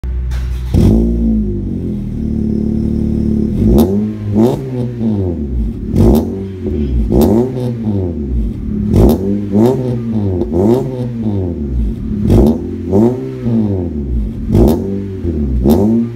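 Honda Civic RS Turbo's 1.5-litre turbo four-cylinder running through an aftermarket full exhaust system with triple tips. It idles with one quick rev about a second in, then from about four seconds on the throttle is blipped over and over in short rises and falls, often two close together.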